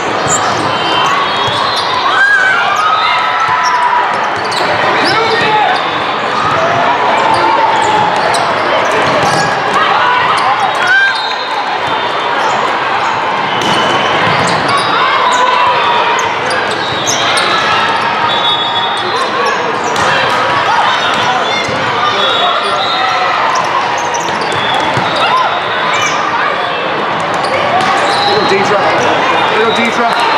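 Echoing hall full of volleyball play: many overlapping voices chattering and calling out, with sharp thuds of balls being hit and bouncing on the courts.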